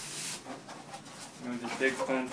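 Brief scraping rustle of a large packing insert being pulled up out of a cardboard shipping box, loudest in the first half second.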